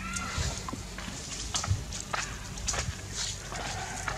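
Young monkeys moving over dirt and dry leaves: scattered crackles and taps, with a short high squeak at the very start.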